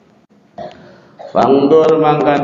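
A short pause in a man's speech, then his voice comes back loud and drawn out about one and a half seconds in.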